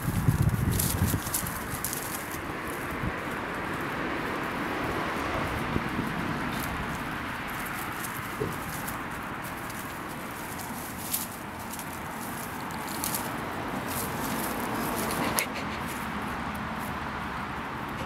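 Steady outdoor background noise with scattered small clicks and rustles as a grey squirrel handles and gnaws a hard bagel ring in dry leaf litter. A louder rustling comes in the first second.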